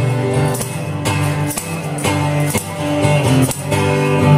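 Acoustic guitar strummed and picked in an instrumental passage of a song, with a sharp chord stroke about twice a second over ringing notes.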